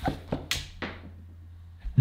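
Handling noise from hands moving: four short taps and thuds in the first second, then only a low steady hum.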